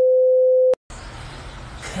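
Test-card tone: one steady, pure beep held for just under a second, which cuts off sharply. After a short gap comes a faint hiss of room noise.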